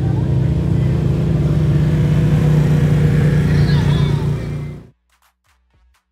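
Side-by-side UTV engine running steadily as the vehicle drives across a dirt track, growing a little louder midway, then cutting off abruptly about five seconds in.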